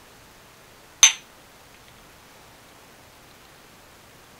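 A single sharp clink of glass about a second in, with a brief high ring.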